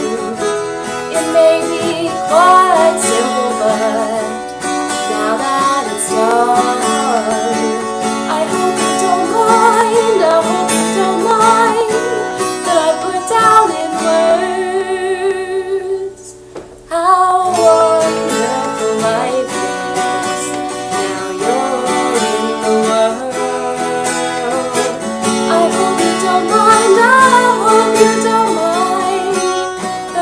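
A woman singing, accompanied by a strummed steel-string acoustic guitar. The music breaks off briefly about halfway through, then resumes.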